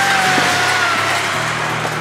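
Electronic background music with a stepping bass line under a dense, noisy upper layer. A sustained tone glides slowly downward over the first second and a half.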